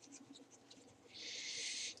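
Pen writing on a board: a faint scratching hiss for most of the last second, after near silence.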